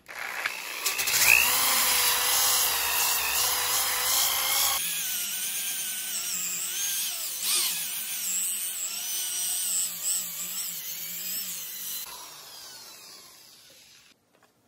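Electric drill with a sanding-disc attachment, running at speed and sanding a wooden board, with a steady motor whine. The sound changes abruptly about five seconds in and winds down over the last two seconds as the drill stops.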